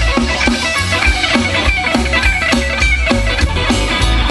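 Rock trio playing live with no vocals: electric guitar over bass guitar and a drum kit keeping a steady beat.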